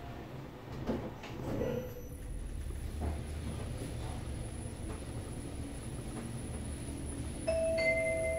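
Shinwon passenger elevator: the car doors slide shut with a couple of clunks, then the car runs down with a steady low hum and a faint high whine. Near the end a two-tone arrival chime sounds.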